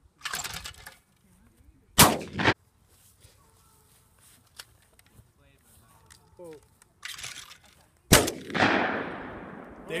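Two clay throws and shots. Each time the spring-loaded clay pigeon thrower releases with a short burst, and a shotgun shot follows about a second or two later. The first shot, about two seconds in, has a second crack close behind it. The second shot, about eight seconds in, is the loudest and rings out with a long fading echo.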